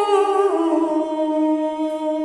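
A woman singing long held notes of an Armenian folk melody, the voice stepping down in pitch about half a second in, over a steady drone.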